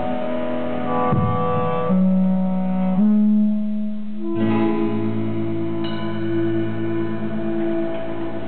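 Live indie-pop band playing slow sustained chords that change about once a second, then settle about halfway through into one long held chord that closes the song.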